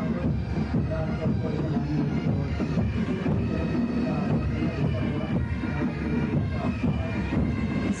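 Parade band music with a steady marching beat.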